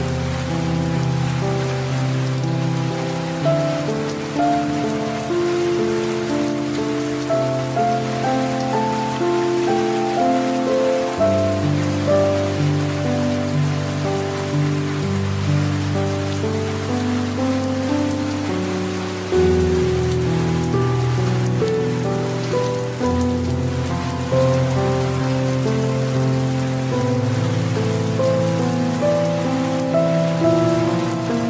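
Steady rain falling, mixed with soft, slow music of held low chords that change every few seconds.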